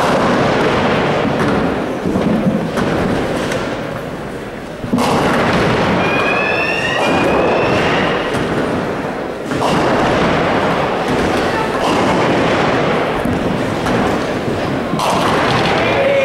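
Classic ninepin bowling hall: heavy balls thudding onto the lanes and rolling, and pins clattering as they fall, under a constant hubbub of spectators' voices. The noise swells suddenly about five seconds in.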